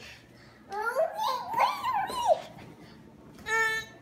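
A young child's high-pitched vocalizing: squealing babble that bends up and down in pitch for under two seconds, then a short held note near the end.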